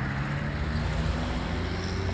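Road traffic: a passing car engine's steady low hum over road noise.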